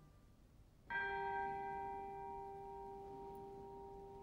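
A single bell-like tone is struck about a second in, after a brief lull in the orchestra, and rings on, slowly fading.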